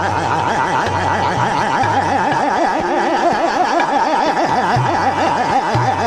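A male Hindustani khayal singer running fast gamak-style taans on an open vowel, the pitch swinging up and down several times a second without a break. Tabla and harmonium accompany in jhaptaal.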